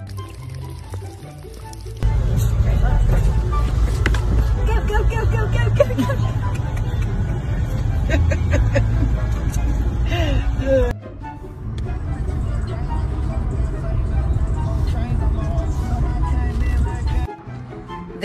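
A moving car with its window open: a loud, low road and wind rumble starts suddenly about two seconds in, dips briefly near eleven seconds and cuts off shortly before the end. Music and voices sound over it.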